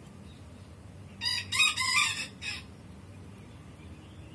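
A rooster crowing once, a loud call of about a second and a half near the middle, over faint steady background.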